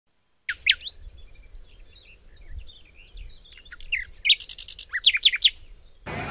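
Birdsong: quick chirps and short whistles, starting about half a second in. A long high whistle comes partway through, and a fast run of chirps near the end.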